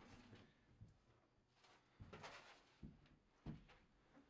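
Near silence with a few faint knocks and scuffs from boots moving along the coop's wooden wall framing.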